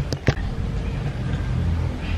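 Two quick knocks as a hand touches the camera, followed by a low steady rumble.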